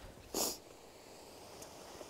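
A single short sniff about half a second in.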